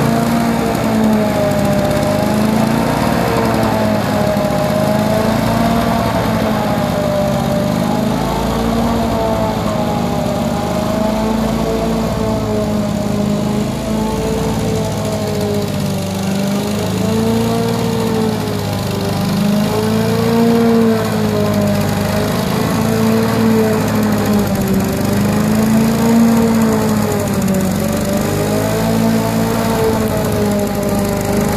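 Petrol push lawn mower engine running steadily.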